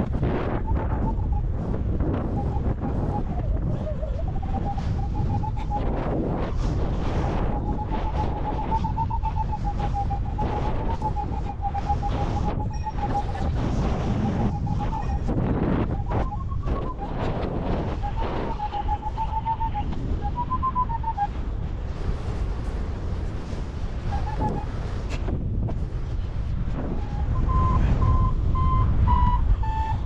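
Wind buffeting the microphone in paraglider flight, with a flight variometer's electronic tone beeping and wavering in pitch near 1 kHz. In the last few seconds the beeps come as short, evenly spaced pips.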